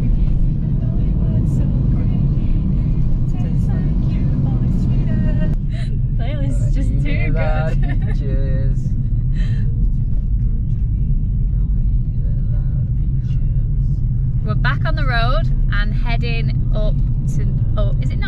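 Steady low road and engine rumble inside a moving car's cabin. A voice sings along in snatches about a third of the way in and again near the end.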